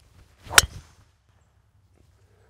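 A golf driver striking a teed ball off the tee: a brief swish of the swing, then one sharp crack about half a second in.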